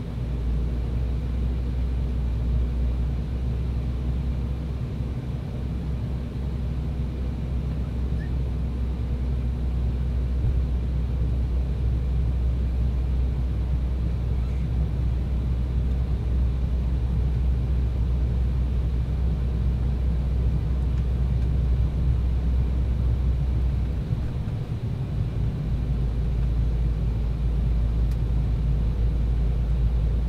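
Cabin noise inside an Embraer E190 airliner on approach: a steady low drone from its two turbofan engines and the airflow, easing briefly about three-quarters of the way through.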